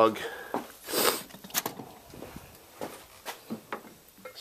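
Handling noises: a brief rustle about a second in, then a sharp click and a few light knocks as a heavy glass beer mug is picked up and set onto a wooden base.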